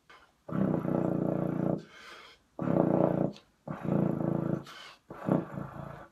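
Chinese-made BBb/FF contrabass trombone played with its stock mouthpiece: four very low sustained notes at the bottom of its range, with short breaths between them.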